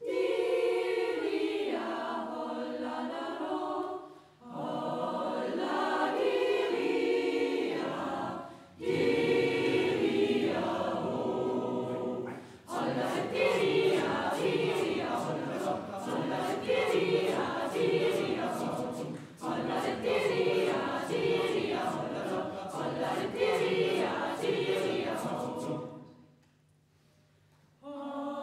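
Mixed youth choir singing unaccompanied in several voice parts, in sustained phrases with short breaks for breath. The singing grows fuller and more rhythmic about halfway through.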